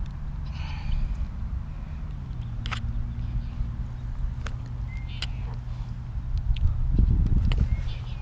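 Scattered clicks and handling sounds from a largemouth bass being unhooked by hand, over a steady low hum. A louder low rumble comes near the end as the fish is lifted.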